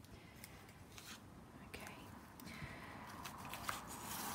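Faint rustling of paper and card being lifted and shifted by hand, with a few light taps, getting a little louder near the end.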